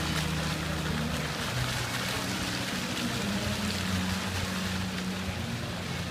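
Jets of a musical water fountain spraying and splashing back into the pool, a steady rush of falling water.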